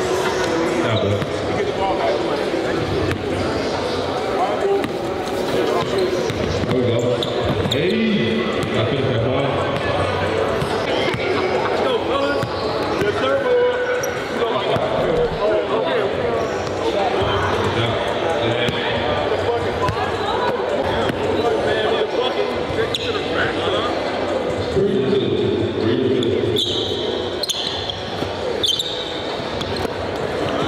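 A basketball bouncing and dribbling on a hardwood court, with the voices of onlookers chattering, in a large gym hall.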